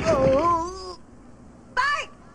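A cartoon character's wavering, wailing vocal cry, about a second long, over the tail of a crash as a boy falls with a stack of boxes to the floor; a short vocal sound follows near the end.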